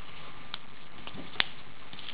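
A strip of paper being folded by hand into an accordion: faint handling rustles and one sharp, short paper tick about one and a half seconds in.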